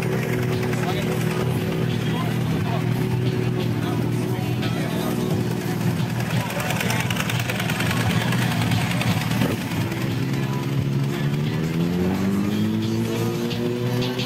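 Sport-bike engines running steadily, with one engine's pitch rising smoothly about three-quarters of the way through and then holding at the higher speed.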